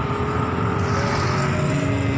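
Small motorcycle engines on the road nearby, a steady engine note that slowly falls in pitch over a low rumble.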